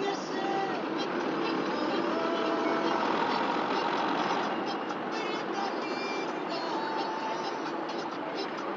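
Steady road and engine noise of a moving car heard from inside its cabin, swelling slightly in the middle.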